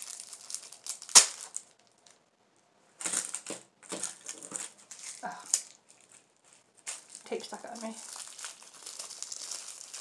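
Plastic bubble wrap being crinkled and pulled off a small packaged item by hand, in bursts of crackling with a brief pause, and one sharp crack about a second in.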